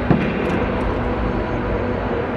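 A doorknob latch clicks sharply once just after the start as a door is opened, over a steady rushing background noise.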